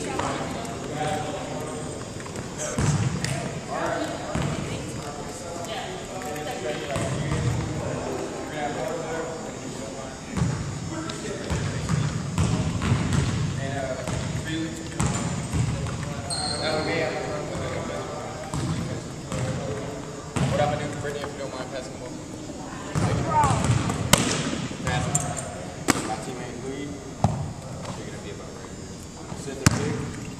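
Basketballs bouncing on a hardwood gym floor, with a few sharp bounces in the last third, under continuous background chatter of a group of people.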